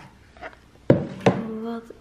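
Handling knocks from a cardboard gift box and its contents on a wooden table: a light knock at the start and a sharper one about a second in.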